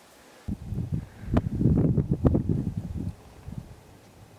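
Wind buffeting the camera microphone in gusts: a jagged low rumble that starts suddenly about half a second in and dies down near the end.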